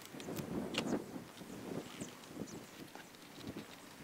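Faint, irregular rustling and light taps from hands peeling tape off an electric lawn mower's handlebar and handling its power cable. The sounds thin out in the second half.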